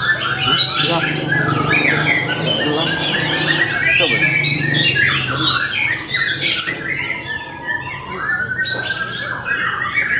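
Several caged songbirds singing and calling at once, a dense overlapping chorus of chirps and quick pitch-gliding notes.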